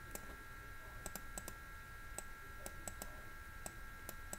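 About a dozen light, irregular clicks from the input device used to handwrite on screen, heard over a faint steady high whine.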